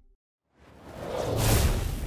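A whoosh sound effect from a logo outro: silent for the first half second, then a rising rush of noise over a deep low rumble that swells to its loudest about a second and a half in.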